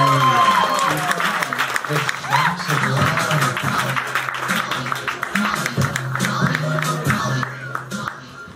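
Audience applause over music playing through the room. The clapping dies down near the end.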